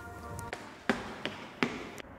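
Footsteps on a hard tiled floor: three sharp steps in the second half, under a faint steady hum.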